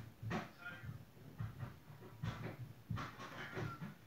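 A low, quiet voice murmuring, the words unclear, with a few short breath-like noises.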